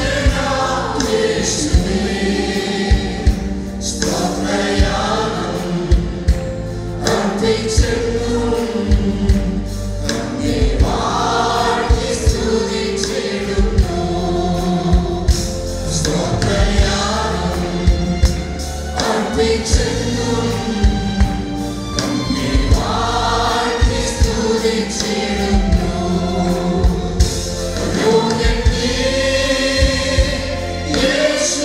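A mixed group of men and women singing a Malayalam worship song together into microphones, backed by guitar and a steady beat.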